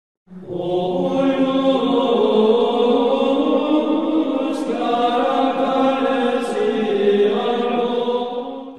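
Slow sung chant as intro music, voices holding long notes that change pitch only now and then, in the manner of liturgical plainchant.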